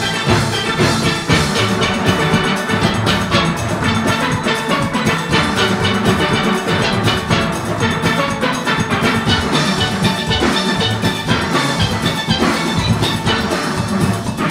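A full steel orchestra playing live: massed steel pans carrying the melody and chords over a drum kit and percussion, with a steady beat.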